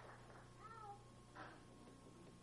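Near silence in the hall, broken by a brief high, falling squeak-like call about half a second in and a single soft knock a little later.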